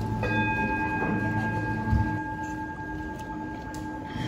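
A bell is struck once just after the start, and its tone rings on and fades slowly, the higher partials dying first, over a low steady drone.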